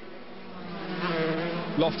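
Several 125cc two-stroke racing motorcycles running at speed on track. Their buzzing engine note grows louder about a second in as the pack draws nearer.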